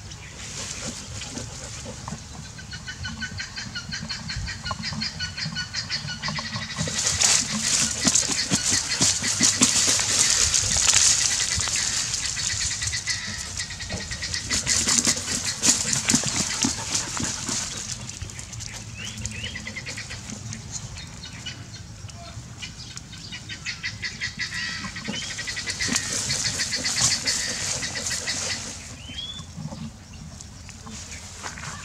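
A dog with its nose pushed into a burrow in grass, sniffing and scrabbling at it in three long bouts of rapid, scratchy rustling.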